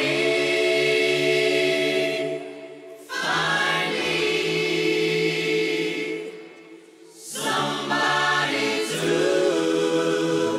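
A four-voice vocal group singing long held chords in close harmony, without accompaniment, in three phrases with short breaks about two and a half and seven seconds in.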